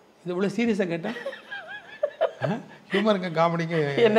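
A woman and a man laughing together in conversation, mixed with some speech; the woman laughs, the man chuckles.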